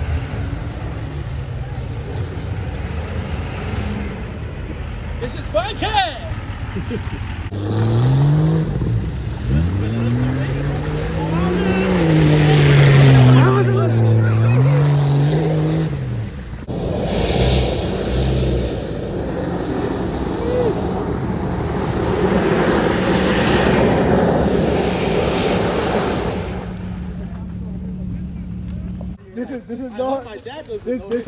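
A vehicle engine revving hard off-road, its pitch rising and falling several times in the middle, over a steady rush of driving noise.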